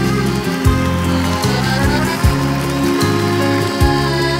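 Live band playing an instrumental passage, with a deep drum beat about every second and a half.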